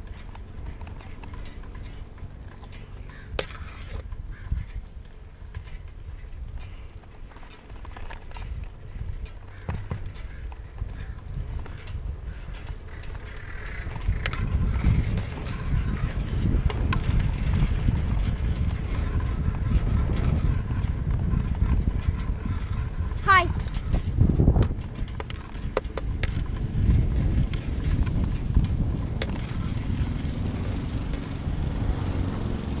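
Bicycle ride heard from a bike-mounted camera: wind rushing over the microphone and tyre noise on asphalt, with scattered clicks and rattles. The rumble grows clearly louder about halfway through. There is a brief wavering squeak about two-thirds of the way in.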